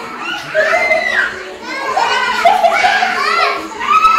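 A group of young children's voices calling out and shouting excitedly, several at once, in a classroom with some room echo.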